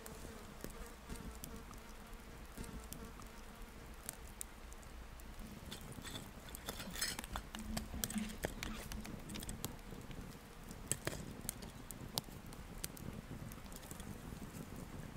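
Small wood campfire crackling with scattered sharp pops, loudest as a cluster about seven seconds in and two single pops near eleven and twelve seconds. A fly buzzes steadily close by for the first few seconds.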